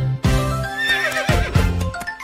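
A horse whinny sound effect, one shaky, falling call starting about half a second in, over a bright children's song backing track.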